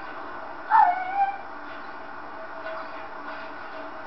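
A dog gives one short yelp-like bark about a second in. It drops sharply in pitch, then holds a lower note briefly, over a steady background hiss.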